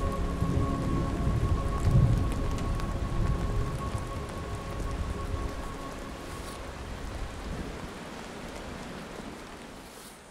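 Steady rain falling, with a low rumble of thunder that peaks about two seconds in. The whole sound fades away gradually, and a faint held tone underneath dies out partway through.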